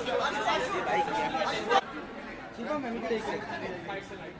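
Several people talking over one another. The sound breaks off abruptly about two seconds in to quieter background chatter.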